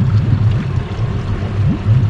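Water lapping and gurgling against the hull of a small boat on open water, with a steady low rumble underneath.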